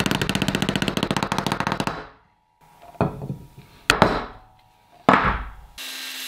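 Steel ball bearing being tapped into a 3D-printed plastic hub through a rod: a rapid run of taps for about two seconds, then three single heavier knocks about a second apart. An angle grinder starts cutting just before the end.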